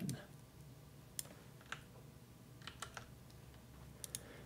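About five faint, sharp clicks from working at a computer, scattered over quiet room tone.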